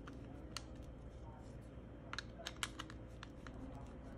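Screwdriver turning the strain-relief clamp screws of an electrical plug, making small irregular clicks and ticks of metal on metal and plastic, with a quick run of sharper clicks about halfway through.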